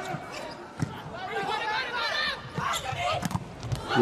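Volleyball rally: several sharp smacks of hands on the ball as it is served and played, with voices in the arena underneath.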